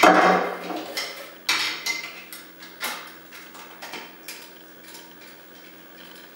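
Hard plastic and metal parts of a Hiblow HP-80 diaphragm septic air pump being handled and fitted by hand during reassembly: a loud clatter at the start, then scattered light clicks and knocks that thin out toward the end.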